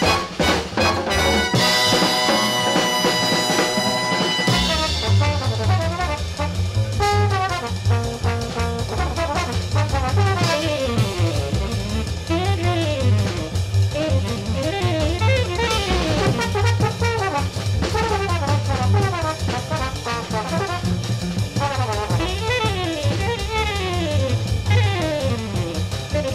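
Jazz brass ensemble recording: a held brass chord for the first four or five seconds, then bass and drum kit come in under fast rising and falling horn lines.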